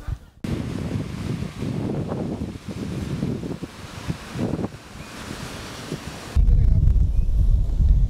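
Small sea waves breaking and washing up a sandy beach. From about six seconds in, much louder wind buffets the microphone as a low rumble.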